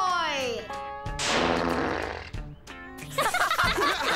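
Cartoon soundtrack music with a steady beat, under sound effects: a falling pitched glide right at the start and a rushing whoosh of about a second, starting about a second in.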